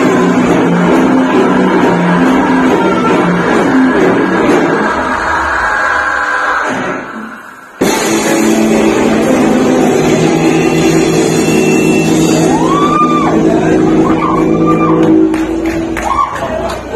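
Live heavy metal band playing with electric guitars, heard in a hall. About seven seconds in, the music fades and drops out briefly. It then comes back loud with a long held chord that rings on to the end.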